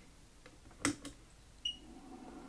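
ZD-915 desoldering station switched on: a sharp click from its power switch a little under a second in, then a short, high single beep from the station as it starts up.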